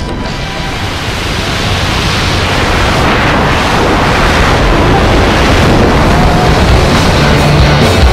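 A rushing, wind-like noise that swells steadily louder, like the air rush of a freefall exit, with music faintly beneath it.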